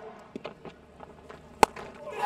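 A single sharp crack of a cricket bat striking the ball, about one and a half seconds in, over faint stadium ambience.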